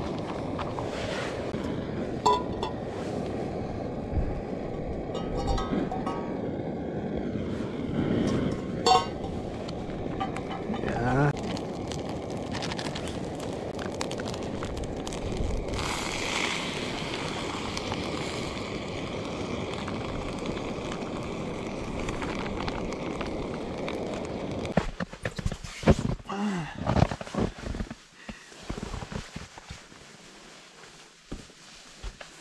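Steady rush of a camp stove's flame under a cooking pot, with a few metal clinks of the pot, lid and spoon. The rush stops suddenly about 25 seconds in, followed by uneven rustles and knocks.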